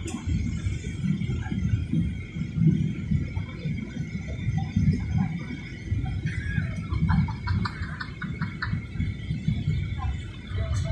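Airliner cabin noise on descent: a low, unsteady rumble of engines and airflow with a thin steady high tone over it. A short run of faint clicks comes about seven seconds in.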